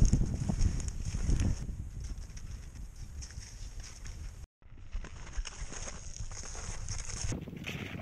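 Ski-touring steps on snow: skis and poles crunching in an irregular rhythm, with a low wind rumble on the microphone. The sound drops out for a moment about halfway.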